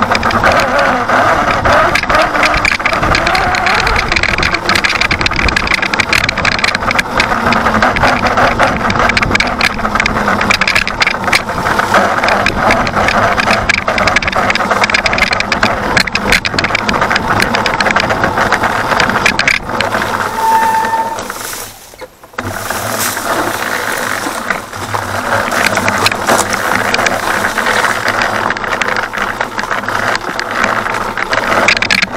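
Electric dirt bike ridden over a rough, rocky trail: continuous tyre and drivetrain noise with steady rattling from the bike's body and fender. The noise drops away briefly about two-thirds of the way through, then picks up again.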